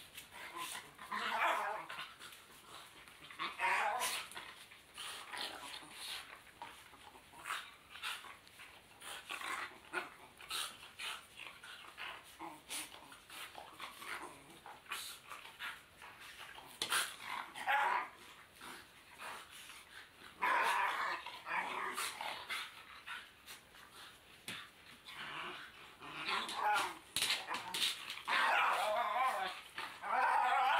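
Two dogs play-fighting, growling and barking in bursts of about a second, repeated several times, with scuffling and short knocks as they wrestle.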